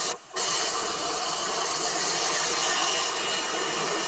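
Handheld hair dryer blowing steadily while drying hair, with a brief drop in its sound just after the start.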